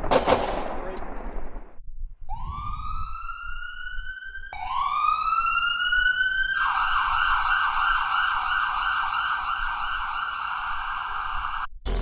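Siren sound effect: two rising wind-up wails, then a fast warbling yelp that holds for about five seconds and cuts off suddenly. It follows a burst of noise that fades away in the first two seconds.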